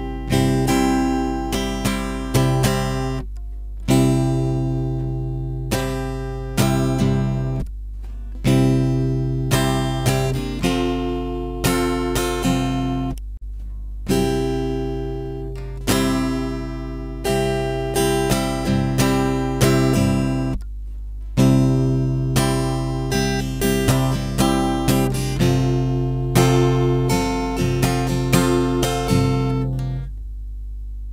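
Capoed acoustic guitar strummed in a steady down-down-up pattern, a repeating chord progression with short breaks between phrases, over a steady low hum.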